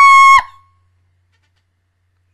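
A woman's loud, high-pitched squeal held on one note, stopping about half a second in.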